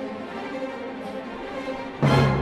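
Orchestral music with sustained bowed-string chords, held steady at a moderate level.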